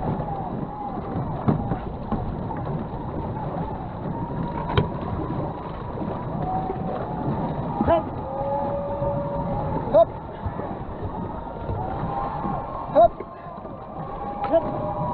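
Water rushing and splashing along a moving canoe's hull under steady paddling, broken by five sharp knocks spaced a few seconds apart. Voices call in the distance.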